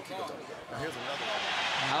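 Faint, indistinct voices, with a hiss of background noise that swells up about two-thirds of a second in.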